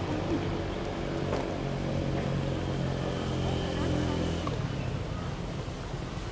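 A motor vehicle's engine running nearby, a steady low hum that stops about four and a half seconds in.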